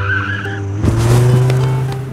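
Cartoon sound effects over background music: a sudden skid-like screech, then about a second in a louder rushing noise with a slowly rising tone.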